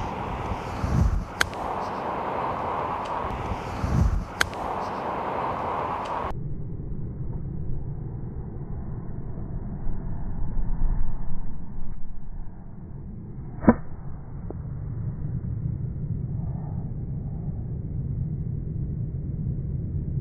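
Outdoor driving-range ambience with wind noise and two sharp clicks of a golf club striking a ball in the first few seconds. Then the sound suddenly turns dull and muffled, and about two-thirds of the way through a single slowed, deeper strike of club on ball is heard, the shot replayed in slow motion.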